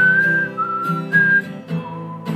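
A man whistling a slow melody of a few held notes, stepping down to a lower note near the end, over an acoustic guitar strumming chords.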